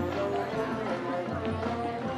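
High school marching band playing on the field: brass and woodwinds hold chords over percussion, with deep low-brass notes swelling in about every second and a half.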